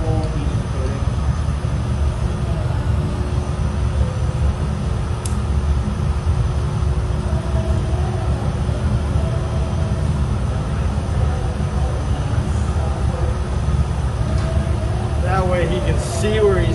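Steady low roar of a glassblowing studio's furnaces and fans, with a single sharp click about five seconds in.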